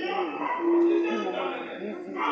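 Actors' voices from a theatre stage, echoing in the hall, with one drawn-out held vocal sound about half a second in.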